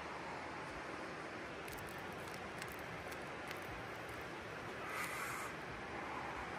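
Steady rush of river water running over rocks, with a brief slight swell about five seconds in.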